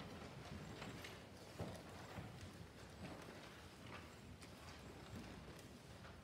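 Near silence: the room tone of a large church, with a few faint, scattered knocks and shuffles.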